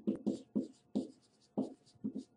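Marker writing on a whiteboard: a quick run of about seven short, scratchy pen strokes.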